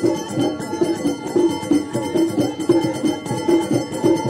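Moroccan traditional percussion ensemble: frame drums and small hand drums beaten in a fast, dense, steady rhythm, with men's voices chanting over it.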